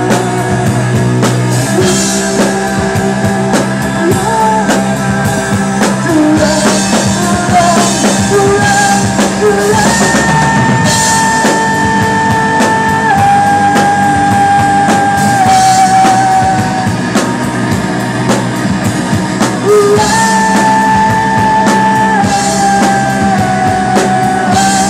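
Live rock band playing: a male lead vocal, sometimes holding long notes, over electric guitar and a drum kit with a steady beat.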